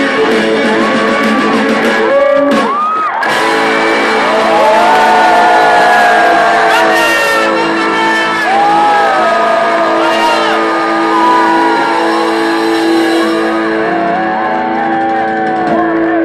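Live pop-rock band with electric guitar playing loud through a concert PA, recorded from the crowd: long held chords under notes that bend up and down.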